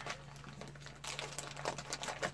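Plastic packets and a zip bag crinkling and rustling as they are stuffed into a nylon first-aid kit pouch: a run of small, irregular crackles.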